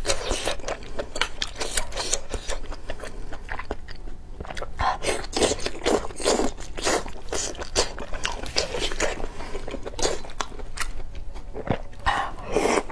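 Close-miked mouth sounds of a person eating hot pot: chewing and biting, with many quick clicks and smacks and a few short slurps as food is drawn from the chopsticks into the mouth.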